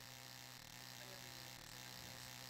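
Faint steady electrical hum over a light hiss.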